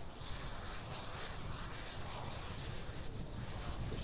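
Falcon 9 first-stage Merlin engines running at full power in ascent, heard as a steady, even rushing noise with no distinct tones.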